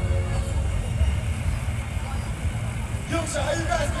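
Low, fluttering rumble of wind buffeting a phone's microphone outdoors, over faint crowd noise; a voice comes in about three seconds in.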